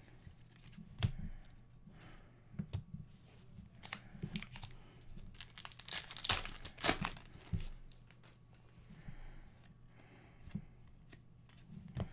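An Upper Deck Series 1 hockey card pack's foil wrapper being torn open and crinkled, among light clicks of cards being handled; the loudest tearing comes about six to seven seconds in.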